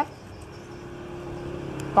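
Low steady hum of a motor vehicle engine, growing gradually louder.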